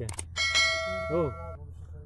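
Two quick mouse clicks, then a bright bell ding that rings for about a second: the sound effect of a subscribe-and-notification-bell button animation.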